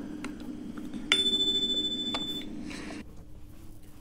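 A single electronic chime tone starts suddenly about a second in, holds for over a second, then fades, over a faint steady hum. It comes from the laptop's playback of the exam recording and is the cue for the candidate to begin interpreting the segment just heard.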